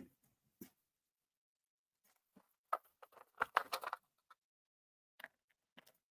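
Faint scattered clicks and taps of small crushed-glass pieces being picked off a paper plate and set down on a decorated panel, most of them packed together about three to four seconds in.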